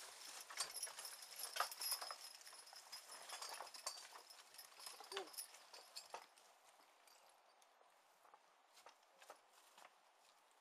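Hoofbeats of a team of Percheron draft horses pulling a horse-drawn sulky plow past close by, with clicks and knocks of the passing team and plow. The sounds grow sparser and fainter and have died away by about two-thirds of the way through, leaving only a few faint ticks.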